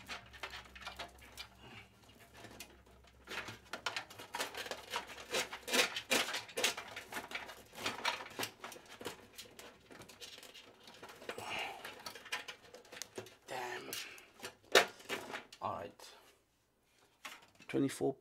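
Rustling, clicking and scraping of sleeved power-supply cables being pulled and fed through a PC case's cable-routing holes, with scattered knocks against the case and one sharper knock about three quarters of the way through.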